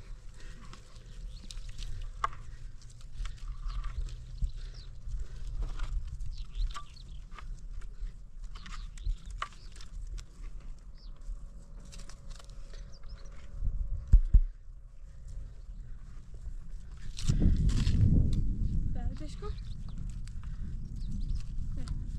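Steel shovel scraping and digging into dry, stony earth, with scattered scrapes and knocks. A heavy thump comes about two-thirds of the way in, and a loud low rumble follows a few seconds later.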